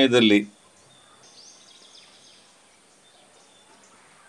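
A man's voice finishes a word in the first half-second. Then comes faint outdoor background with a brief high bird twittering about a second and a half in.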